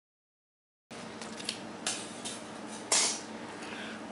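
Scissors snipping paper: after dead silence for about the first second, a few short sharp snips, the loudest about three seconds in.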